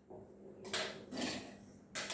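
Ice cubes clinking as they are picked from an ice container and dropped into a stainless-steel cocktail shaker: a few soft clinks.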